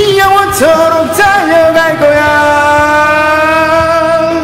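A man's wordless vocal ad-lib over a karaoke backing track of a ballad: quick bending runs in the first two seconds, then a long held note.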